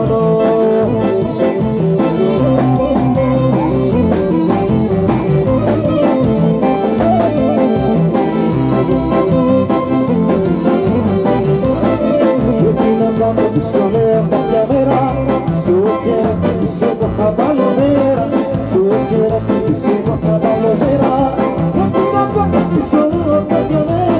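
Loud live Greek popular music: a singer over plucked string instruments, playing without a break.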